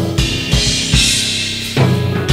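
Drum kit played with mallets: bass drum strokes and ringing toms under cymbal washes that swell just after the start and again about a second in.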